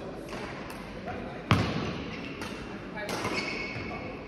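Badminton rally: rackets striking a shuttlecock, a series of sharp cracks that echo in the hall, with one much louder hit about one and a half seconds in.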